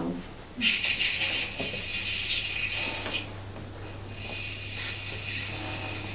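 Leafcasting machine draining the fibre-laden water down through the pages on its mesh screen: a loud hiss for about two and a half seconds, then a softer hiss, over a low steady hum that comes in early.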